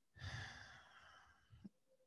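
A woman's soft, audible out-breath, strongest at first and fading away within about a second, followed by a faint click near the end.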